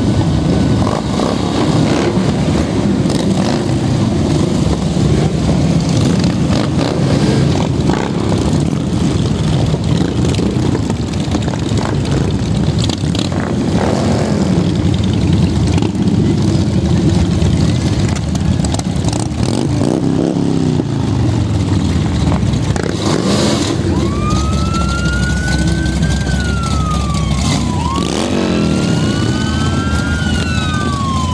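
A procession of heavy touring motorcycles running past at parade pace, a steady engine drone with individual bikes swelling and fading as they pass. From about two-thirds of the way in, a siren winds up and down in long rising and falling sweeps.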